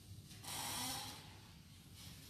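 A man drawing a short breath, a hiss lasting about half a second that starts about half a second in.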